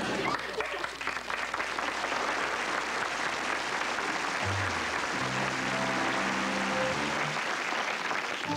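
A studio audience of children applauding. About halfway through, a keyboard comes in under the clapping with sustained chords.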